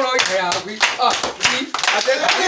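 Several people clapping their hands, roughly three claps a second, mixed with lively voices.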